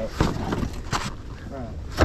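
Two sharp knocks, about three quarters of a second apart, as a soft-sided cooler bag is handled and set down on a boat deck, over a steady low rumble.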